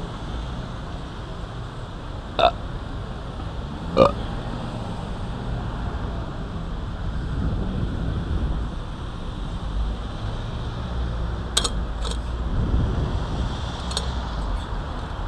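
Street ambience on a shopping street: a steady low rumble of traffic and wind on the microphone, broken by two short, sharp sounds a few seconds in and another quick pair near the end.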